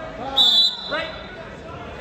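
Referee's whistle, one short blast about half a second in, over voices.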